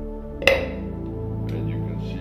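Hydrogen gas collected in a glass capture jar igniting at a lighter flame: one sudden, short explosion about half a second in, with a smaller click about a second later, over steady background music.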